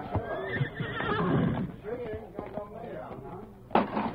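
Horse whinnying over the first couple of seconds, with hooves clip-clopping: a radio-drama sound effect for the team hitched to a buckboard.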